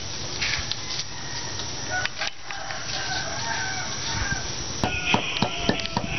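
A drawn-out, wavering animal call lasting about two seconds, starting about two seconds in, over a steady low rumble. Near the end come sharp clicks and a higher-pitched sound.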